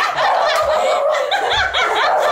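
A group of people laughing together, several voices snickering and chuckling over one another without a break.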